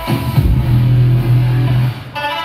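Loud dance music: a kick drum about half a second in, then a long held bass note that drops away just before the end.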